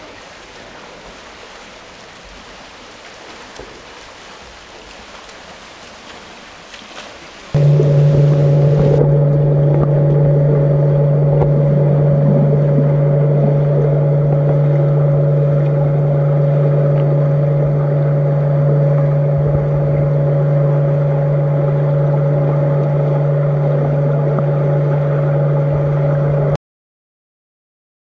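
Swimming-pool ambience with swimmers splashing, then about seven seconds in a sudden switch to much louder underwater pool sound: a steady low hum over rushing water noise, which cuts off abruptly near the end.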